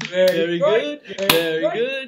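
Two men laughing loudly together in drawn-out, pitch-gliding 'ah-ha' laughs, the deliberate laughter of a laughter yoga exercise. A single sharp click cuts through just past halfway.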